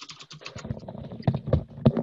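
Typing on a computer keyboard: a quick, uneven run of key clicks, with a few louder keystrokes in the second half.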